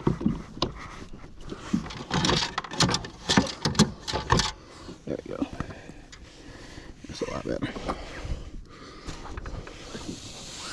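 Knocks, clatter and rustling as a largemouth bass and a plastic fish-measuring board are handled in a kayak. There is a run of quick knocks from about two to four and a half seconds in.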